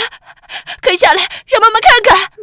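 Speech: a woman's voice speaking Mandarin, with breathy stretches between the words.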